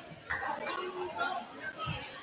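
Chatter of many people talking at once in a school gymnasium, with a couple of short low thumps near the start and near the end.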